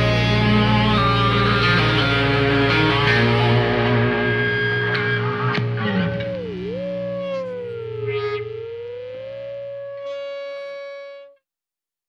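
Rock track ending on heavily distorted electric guitar through effects: dense playing thins after about six seconds to lone notes bent down and back up and a held note ringing out, then the track stops abruptly near the end.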